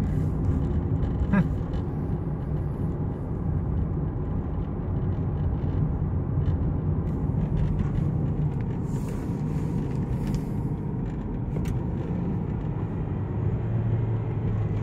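Steady engine drone and road noise of a Kia heard from inside the cabin while cruising. The car is held on the throttle but is not gaining speed, losing power with no service-engine light showing.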